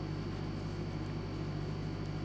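Steady low electrical hum with a thin high whine and a faint even hiss, unchanging throughout.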